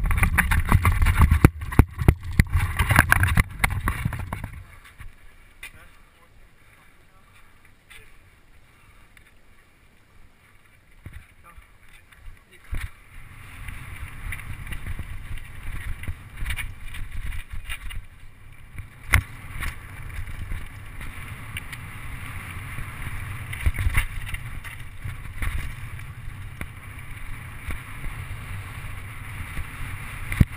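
Mountain bike riding down a dirt track, heard from a camera mounted on the bike: wind on the microphone, tyres on the dirt and the bike rattling and knocking over bumps. Loud in the first few seconds, it drops away for several seconds, then picks up and runs steadily with scattered sharp knocks.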